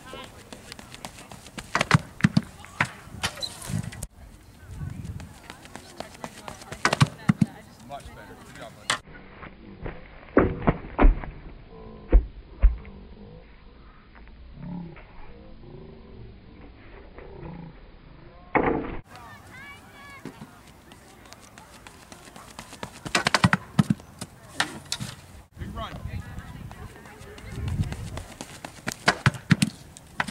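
Pole vault attempts: a run of sharp knocks and thuds from the pole planting and the vaulter landing on the foam pit. The loudest thuds come about ten to twelve seconds in. Indistinct spectator voices run underneath.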